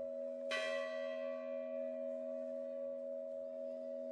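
A large bronze bell, its clapper pulled by a rope, struck once about half a second in. It rings on with several steady tones, the high ones fading over the next few seconds while the deep hum lasts.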